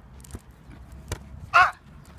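A man's short cry of pain, "ah", about one and a half seconds in, at a sudden cramp, after two sharp knocks earlier on.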